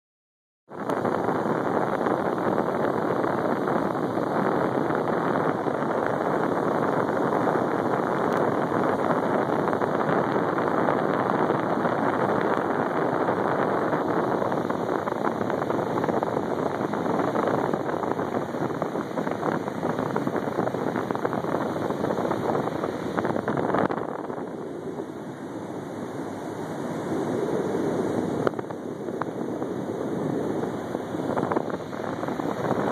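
Steady rushing noise of wind buffeting a phone's microphone over the sound of the sea, easing for a few seconds about three-quarters of the way through.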